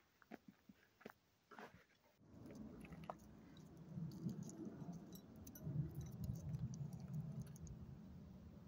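A few faint clicks of phone handling, then from about two seconds in a low, uneven rumble of wind buffeting the phone's microphone.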